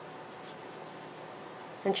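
Faint rubbing of cardstock between fingers as a handmade greeting card is turned over in the hands. A woman starts speaking near the end.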